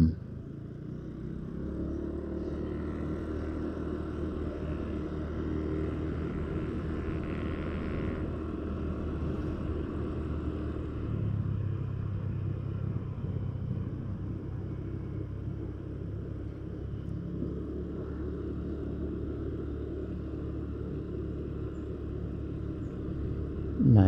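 Steady low hum of a motor vehicle's engine and tyres while driving slowly on a residential road. The hum grows a little stronger about halfway through.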